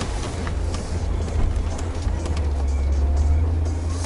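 Mercedes G500's V8 engine running at low revs, heard inside the cabin as a deep steady drone while the vehicle crawls over a rock obstacle with its differential locks engaged. The drone grows louder about two seconds in.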